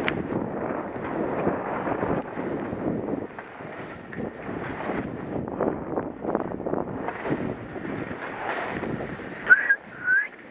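Wind rushing over a skier's action-camera microphone, mixed with skis scraping and hissing over packed snow in uneven surges. Near the end comes a brief high squeal.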